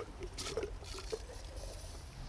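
Water from a garden hose watering wand running into a window box's self-watering reservoir fill pipe, heard as a faint, irregular patter and trickle.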